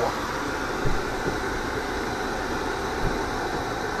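Steady cabin noise inside a Mercedes: the ventilation fan blowing over the idling engine, with a couple of soft bumps.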